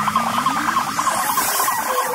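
Dark forest psytrance in a short break: the kick drum drops out while a dense layer of quick chirping, squiggling electronic sounds carries on. A hissing sweep brightens near the end, leading back into the beat.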